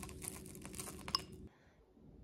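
Granola clusters crumbled between the fingers and falling onto a smoothie bowl: light, scattered crackles and ticks that stop abruptly about one and a half seconds in.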